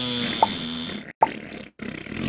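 Comic dubbed fart sound effect for an elephant passing dung, a long fart noise with sharp splats that breaks off about a second in, followed by a shorter splat.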